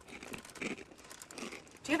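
Someone eating crunchy food noisily, with irregular crisp crunching and crinkling. The eating is loud enough to draw a complaint.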